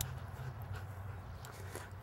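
Faint sounds of a dog close by, with a few light scuffs and clicks and no gunshot.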